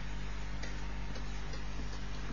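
A few faint, irregular ticks from a stylus tapping on a pen tablet while writing, over a steady low electrical hum.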